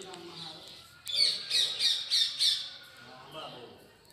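A bird squawking: a quick run of five harsh, high calls starting about a second in and lasting about a second and a half.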